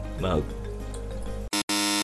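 Background music with a short spoken word, then a loud electronic buzzer sound effect cuts in abruptly near the end: a brief blip and then a held buzz. It is a censorship buzzer covering an edited-out passage.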